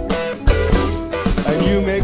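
Live blues-rock band playing: electric archtop guitars over upright bass, keyboard and a drum kit with cymbals, with regular drum hits.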